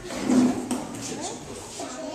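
Indistinct voices talking in a room, not made out as words, with a brief click about two-thirds of a second in.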